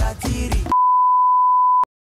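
Music with a singing voice cuts off about two-thirds of a second in and is replaced by a loud, steady, single-pitched censor-style bleep lasting about a second, which ends with a click.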